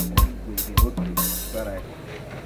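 Background soundtrack music with a steady drum beat, cutting off shortly before the end.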